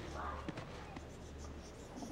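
Quiet scratchy rustling of a fabric backpack being lowered by its strap, with two faint clicks about half a second apart.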